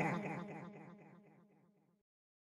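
The end of a hip-hop track: the beat has stopped and a delay echo of the last spoken vocal tag repeats and fades away over about a second, then silence.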